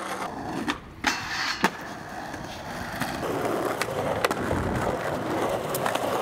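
Skateboard wheels rolling on concrete, with a few sharp clacks of the board in the first two seconds. From about halfway through the roll is steady and louder, with occasional clicks.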